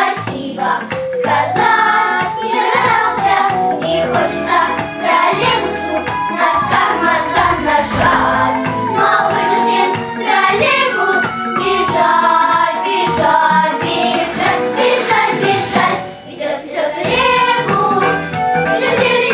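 Children's vocal ensemble of girls singing a song together over an instrumental accompaniment with a steady beat.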